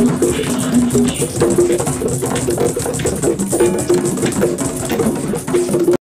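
LP conga drums played with the hands in a quick, steady run of strokes, over music with held low notes.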